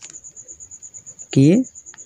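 A cricket chirping in a steady high-pitched trill of about eight pulses a second.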